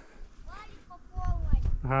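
Mostly speech: a faint distant voice, then a man's voice close to the microphone near the end, over an irregular low rumble.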